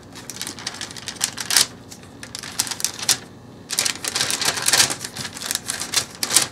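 A thin clay blade cutting through a slab of polymer clay and knocking and scraping on the paper-covered table: an irregular run of short clicks and scrapes.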